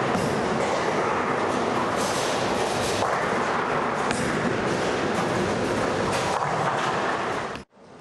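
Bowling alley noise: a steady rumble of balls rolling down wooden lanes, with a few sharp knocks of pins, cutting off suddenly near the end.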